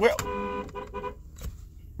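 Dual-tone car horn sounded once and held steady for about a second, followed by a short click.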